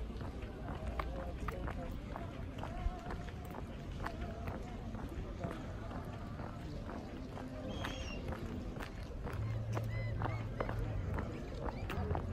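Footsteps walking on cobblestones, with people's voices talking in the background. A low steady hum comes in about nine seconds in.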